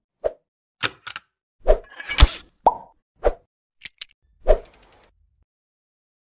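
Animated-logo sound effects: a string of about nine short, separate hits spaced unevenly over five seconds, a couple of them with a brief high swish, then they stop.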